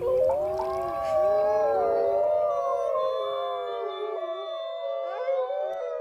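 A pack of gray (timber) wolves howling in chorus: several long howls overlap at slightly different pitches, each held and gliding gently up and down.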